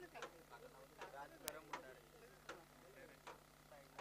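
Near silence with faint, distant voices chattering, and one faint sharp click about a second and a half in.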